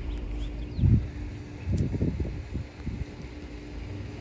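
Gusts of wind rumbling on the microphone, with a few faint bird chirps early on.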